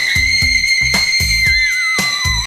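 A voice holding a very high note over a hip-hop beat with bass notes, the note dropping and wavering with a wobble about one and a half seconds in.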